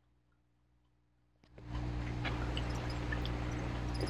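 Near silence, then about a second and a half in a click and a steady low electrical hum with faint hiss that runs on.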